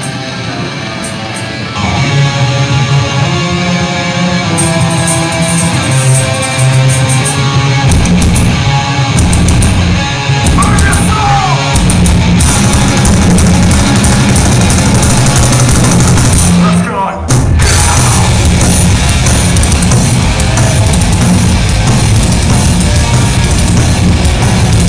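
Live rock band playing a song with electric guitars, bass and drums. Guitar leads the opening, and the full band comes in heavily about eight seconds in, with a brief break around seventeen seconds before it carries on.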